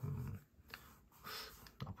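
A man's low, drawn-out 'mm' hum trailing off, then near quiet with a short breath and a couple of faint clicks.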